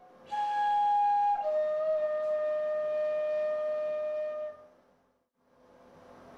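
Flute melody in a song: a held note steps down to a lower one that is sustained for about three seconds, then fades out, over a faint steady background tone. A softer passage follows near the end.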